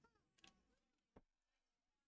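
Near silence: room tone with two faint clicks, one about half a second in and one just after a second.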